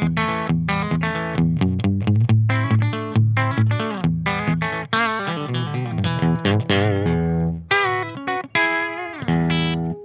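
Duesenberg Fullerton Hollow thinline hollow-body electric guitar with P90 pickups, played through an amplifier on the bridge pickup: a quick run of twangy picked single notes, with notes wavering in pitch in the second half.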